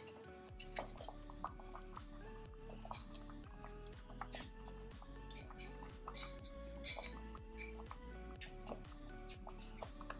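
Background music: a melody over a steady beat.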